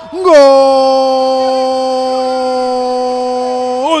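A football commentator's long drawn-out goal cry, "¡Gol!", held on one steady pitch for about three and a half seconds and then broken off into another "gol" near the end.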